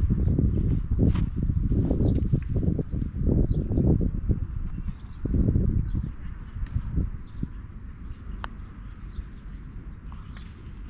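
Wind buffeting the microphone in uneven low gusts, heaviest over the first six seconds and then easing. A single sharp click comes about eight and a half seconds in.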